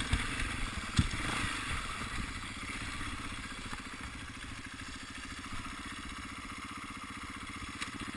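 Enduro dirt bike engine running at low, steady throttle, with one sharp knock about a second in.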